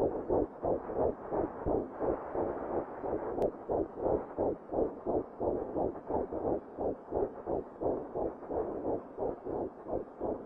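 Fetal heartbeat heard through an ultrasound Doppler: a fast, even pulse of about two and a half beats a second.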